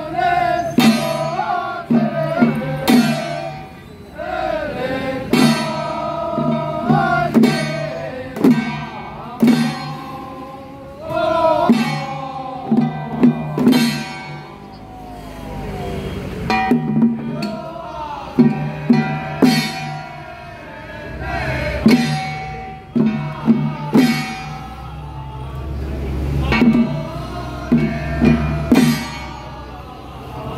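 A xiaofa ritual troupe chanting an incantation in unison, the melody rising and falling, over repeated strikes on octagonal long-handled hand drums (fagu) that come in quick groups.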